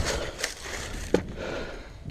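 Footsteps and gear rustling in dry leaves as a shooter comes to a stop at a plywood barricade, with one sharp knock a little over a second in as the rifle is set against the barricade.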